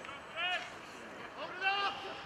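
Men shouting across an open football ground: a short call about half a second in, then a longer call that rises and falls near the end.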